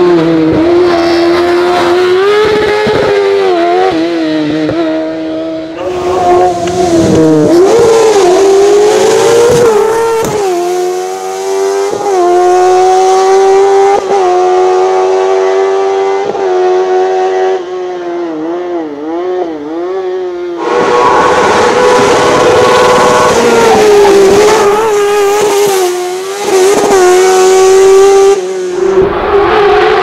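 Suzuki GSX-R 1000 inline-four motorcycle engine in a small Zastava 750 race car, revving high and hard, its pitch climbing through the gears and dipping and wobbling as it lifts and shifts down for corners. The sound changes abruptly twice, about ten seconds in and again past the twenty-second mark, as the car is heard from different points on the course.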